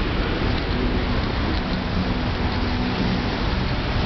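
Steady noise of jammed street traffic: many idling car and motorcycle engines, with a low engine hum that comes and goes.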